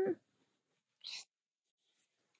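A woman's drawn-out, sung 'yum' ends just after the start, then near silence with one brief soft hiss about a second in.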